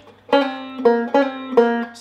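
Five-string banjo picking four single notes in a row, each with a sharp attack and a short ring, part of a blues lick in G.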